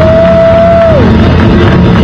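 Electric blues band playing live, with a lead guitar note that bends up, is held about a second, then drops away over the band's steady backing.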